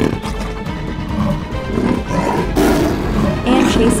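Cartoon background music with a big cat's roar sound effect over it.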